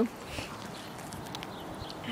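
Faint scuffs and light taps of someone moving about on an asphalt-shingle roof, over a low steady background hiss.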